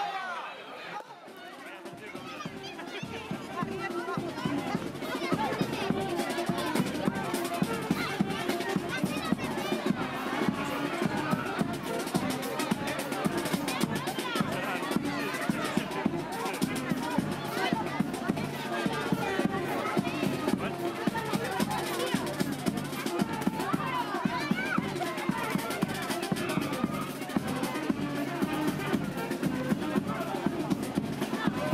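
A brass-and-drum street band playing a lively tune with a steady bass-drum beat, with a crowd talking and shouting over it. The music comes in about two seconds in.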